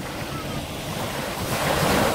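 Small waves washing up on a sandy beach, the wash swelling to its loudest near the end.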